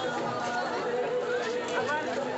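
Crowd chatter: many people talking at once, their voices overlapping into a steady babble.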